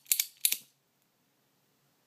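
Regens squeeze-action lighter's lever and flint wheel working as it is squeezed to strike and light: two sharp metallic clicks in the first half second.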